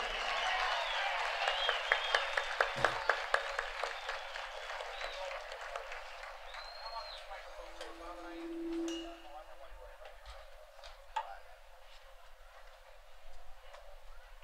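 Audience applauding, dense clapping at first that thins out after about four seconds into scattered claps and crowd murmur, with a short low held note in the middle.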